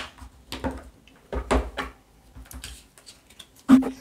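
Handling noise of oracle cards, a cardboard deck box and its booklet on a table: a series of light clicks and taps, with a dull knock against the microphone about a second and a half in.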